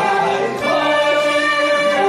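A small saxophone ensemble playing long held notes in harmony, moving to a new chord about half a second in.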